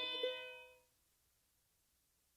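Final chord of a bluegrass band's string ensemble ringing out and fading, gone within about a second at the end of the song.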